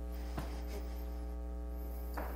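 Steady electrical mains hum, a low buzz with a stack of overtones, with one faint click about half a second in.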